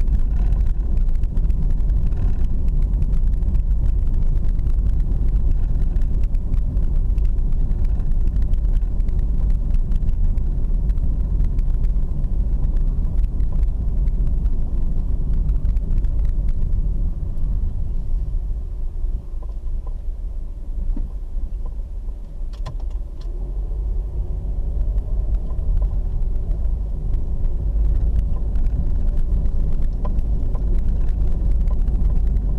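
Car driving, heard from inside the cabin: a steady low rumble of engine and road noise. It drops for a few seconds past the middle, then builds back up.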